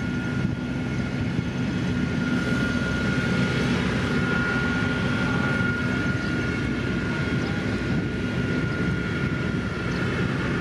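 Heavy diesel engines of a line of LiuGong road rollers running steadily, a continuous low rumble with a thin, steady high whine over it.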